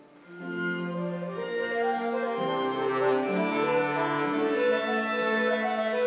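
Piano accordion playing a slow passage of long held notes and chords. After a brief lull at the very start, a new phrase comes in and swells, then sustains.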